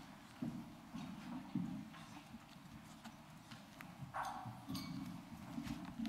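Faint, irregular knocks and taps with some paper rustling, from papers and objects being handled on a desk close to a desk microphone. The sound cuts off abruptly at the very end.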